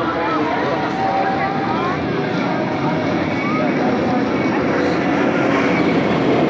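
Maxx Force steel roller coaster train running along its track overhead with a steady roar, over the chatter of people nearby.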